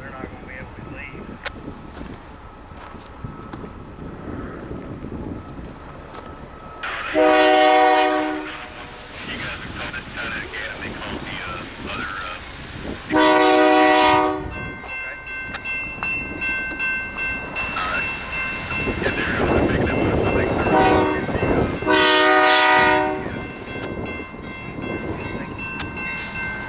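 Multi-chime horn of a BNSF GE diesel locomotive on an approaching freight train sounding the grade-crossing signal: long, long, short, long. The locomotives' rumble grows louder toward the end.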